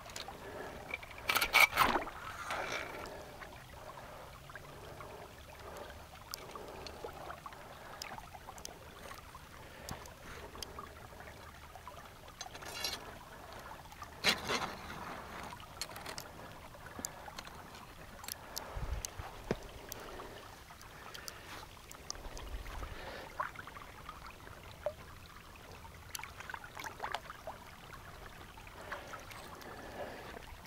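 Hands working a foot trap and its rebar drowning rod in shallow muddy water: scattered splashes and knocks, loudest about two seconds in and again near the middle. Under them runs a faint trickle of water.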